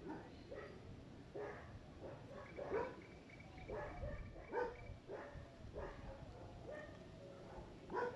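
Dogs barking faintly, a short bark every half second to second or so. A faint steady high tone runs for a few seconds in the middle.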